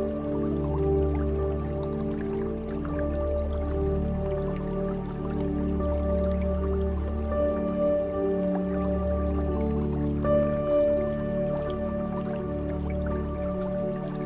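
Slow ambient meditation music: sustained chords over a deep drone that shifts every few seconds, with light water drips scattered through it.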